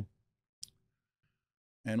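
A single short, sharp click about half a second in, in an otherwise near-silent pause, then a man's voice starts speaking near the end.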